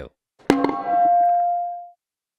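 A single sharp metallic strike about half a second in, followed by a clear ringing tone that fades away over about a second and a half.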